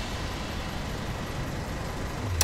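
Steady urban background noise of distant traffic, an even rumble and hiss.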